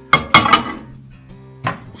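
Ceramic bowl set down on a microwave's glass turntable: two sharp knocks close together, then another knock near the end, over background music.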